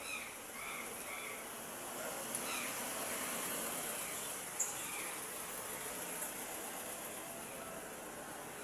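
Street ambience under a steady high insect buzz, with a few short bird chirps and a box truck driving slowly past. A couple of sharp ticks come partway through, the louder one a little past the middle.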